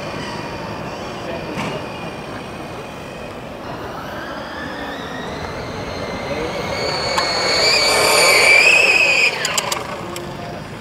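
Electric RC Formula One car, converted from nitro, running at about 10% throttle: a pitched electric motor and drivetrain whine. The whine rises in pitch and grows louder, peaks near the end, then cuts off suddenly, followed by a few clicks.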